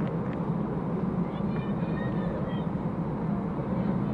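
Steady pitch-side ambience of a football match: an even background rumble with a few faint, distant shouts about halfway through.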